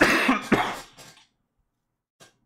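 A man coughing twice into his hand, the two coughs about half a second apart.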